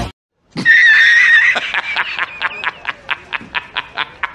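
A high-pitched squeal held for about a second, breaking into a quick run of short pulses, about six a second, that fade away: an inserted sound effect.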